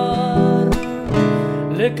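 Nylon-string criolla guitar strummed in the zamba rasguido, holding an E minor chord at the end of a sung line. The singer's voice comes back in near the end.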